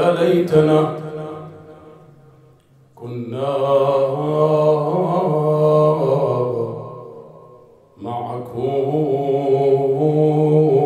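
A man chanting a slow, melodic Arabic mourning elegy into a microphone, in long held, wavering phrases. A short phrase comes at the start, then two longer ones begin about three seconds and eight seconds in.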